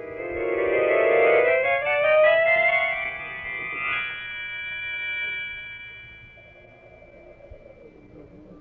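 Organ music bridge marking a scene change in an old-time radio drama: a rising run of notes that settles onto a held chord, which fades away about six seconds in.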